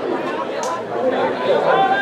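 Indistinct voices chattering at a sports field, with a high-pitched shout or call starting near the end.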